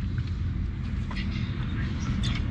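Steady low rumble of an idling vehicle engine, with a few faint small sounds as a drinks can is drunk from.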